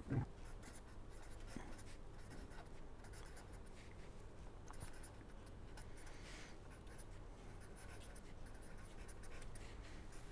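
Pen writing on paper, a faint steady scratching of handwritten strokes. A short louder sound comes right at the start.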